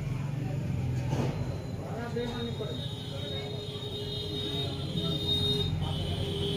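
Steady low background rumble with a faint voice-like murmur. A steady high whining tone joins about two seconds in and holds.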